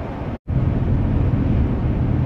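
Steady low road and engine noise inside the cabin of a Chevy Avalanche pickup driving on the highway. A brief dropout to silence less than half a second in, from an edit, after which the drone comes back slightly louder.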